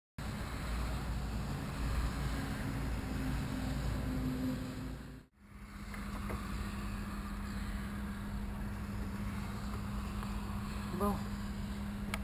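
Jodel D195 light aircraft's engine idling while it sits on the ground, a steady low drone. The sound breaks off abruptly about five seconds in and comes back as a steadier hum. A short spoken "oh" comes near the end.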